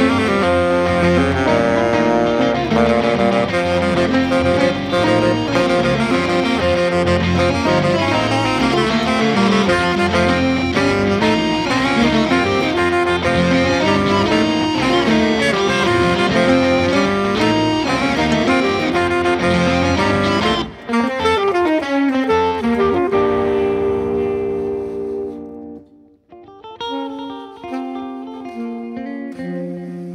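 C-melody saxophone and Telecaster electric guitar playing an improvised jazz duo. About two-thirds of the way through, the dense playing thins into falling, sliding notes and nearly drops out, then picks up again with sparser guitar notes.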